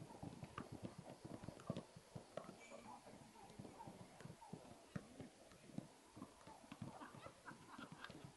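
Faint, irregular thuds of several footballs being kicked and juggled at once, several knocks a second with no steady rhythm.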